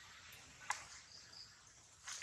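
Faint outdoor ambience of a steady insect chorus. One sharp click comes a little under a second in, and two short high chirps just after.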